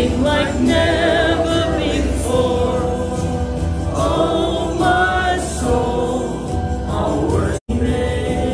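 Church congregation of men and women singing a worship song together. The sound cuts out completely for an instant near the end.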